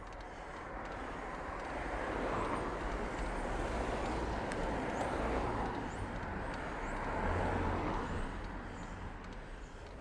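Motor traffic passing on a wet road: tyre noise and engine sound swell over a few seconds and then fade, with a low engine hum near the end.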